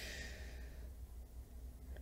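A soft sighing exhale close to the microphone, fading out about a second in, then quiet room tone with a low steady hum.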